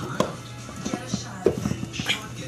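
Music playing in the background, with two sharp clicks from a phone charger cable being plugged in and handled close to the microphone, the louder one about a second and a half in.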